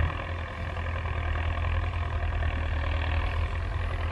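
Belarus 1025 tractor's turbocharged diesel engine running steadily under load as it pulls a tillage implement through the field, heard from a distance as a low, even drone.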